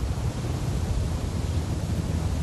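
Wind buffeting an outdoor microphone: a steady rushing hiss over an uneven low rumble.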